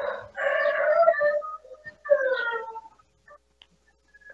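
Two drawn-out animal calls, the first longer and the second shorter and sliding down in pitch.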